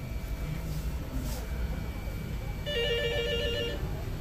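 A telephone ringing: one warbling electronic trill, rapidly switching between two close notes, lasting about a second near the end, over a steady low background hum.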